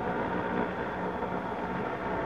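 Steady hum of a stopped car's engine idling.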